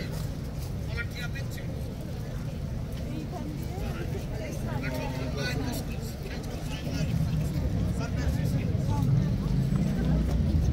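Busy city street ambience: a steady low rumble of road traffic with scattered chatter of people around, growing a little louder about seven seconds in.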